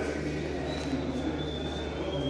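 Steady low electrical hum with an indistinct background murmur and a faint high tone: the ambient sound of a stadium corridor picked up by an open camera microphone.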